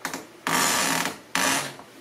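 A door swinging on squeaky hinges: two creaks, the first about a second long starting half a second in, then a shorter one right after.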